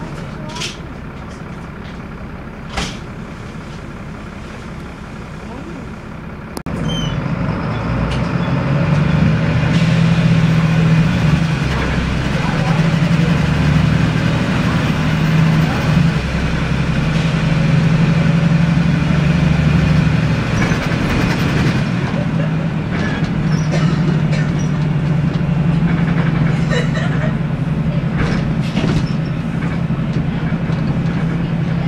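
Interior sound of a Volvo B7L bus's Volvo D7C six-cylinder diesel engine: a low idle hum that steps up suddenly about six and a half seconds in, as the bus pulls away, into a loud, steady engine note under load.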